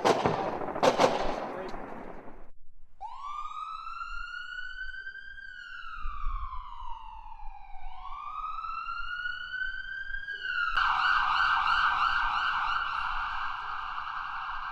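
A crackling noise with sharp pops for the first two seconds, then a siren: a slow wail that rises, falls and rises again, switching about eleven seconds in to a fast warbling yelp.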